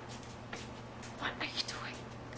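Hushed, whispered speech over a steady low electrical hum, with a few soft clicks in the second half.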